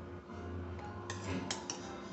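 Metal scissor blades snipping at the neck of a small soft orange juice bottle: three sharp clicks in quick succession about a second in.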